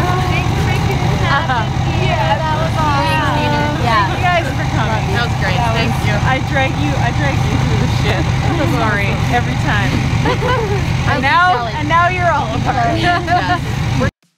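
Several women chatting and laughing over one another, with a vehicle engine idling steadily underneath. Both stop abruptly at the end.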